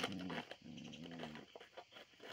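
Small dog growling low in two stretches, the second about a second long, while playing with and biting a crumpled red plastic object. There is some crinkling and clicking of the plastic.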